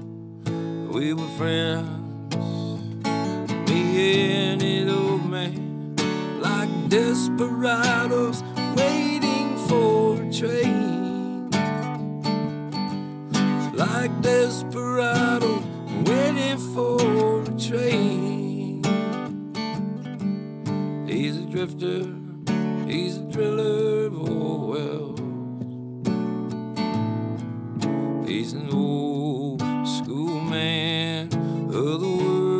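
Acoustic guitar strummed through an instrumental break of a country-folk song, with a bending melody line carried over the chords.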